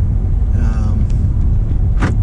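Steady low engine and road rumble heard inside the cab of a pickup truck on the move. A brief vocal sound comes about half a second in.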